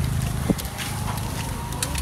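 Outdoor background with a steady low hum, a single sharp click about half a second in, and a few faint ticks.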